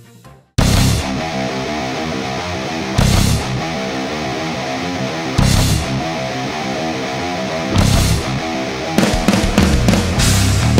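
Heavy metal song with guitars and drums kicking in suddenly about half a second in, after a brief drop-out that ends a quiet string passage. Crash cymbal accents fall about every two and a half seconds, with a busier drum fill near the end.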